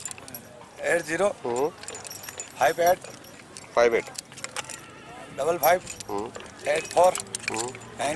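People talking in short phrases, with light metallic jingling and clinking running between the words.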